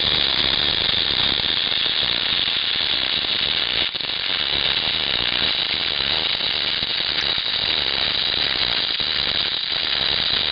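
Electric arc welding: the arc crackles and hisses steadily as spatter flies, with a brief dip about four seconds in.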